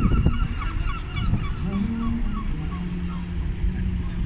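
Busy street traffic with a rapid, evenly spaced high chirping, about five chirps a second, that fades out past the middle. An engine hum comes in about halfway through.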